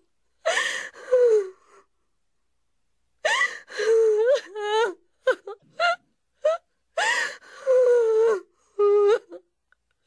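A person sobbing and wailing: a run of drawn-out, wavering cries broken by gasping breaths, in bursts with short silent gaps between them.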